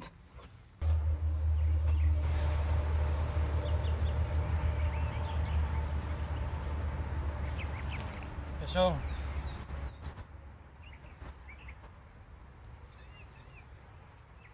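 Wind buffeting the microphone: a loud low rumble that sets in about a second in and fades out after about ten seconds, with faint bird chirps over it.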